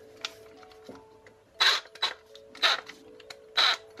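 Plastic body of a Parkside cordless jigsaw/sabre saw being handled: four short clicks and scrapes as its parts are worked by hand, while a blade will not go in easily.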